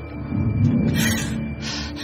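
Dark, tense drama background score of sustained tones, with a low rough rumble swelling in during the first half and two short hissing swells near the middle and end.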